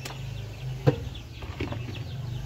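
A hand-held stone pounder knocking down onto piñuela fruits on a wooden board, crushing them: a sharp knock at the start, a louder one about a second in, and a fainter one after.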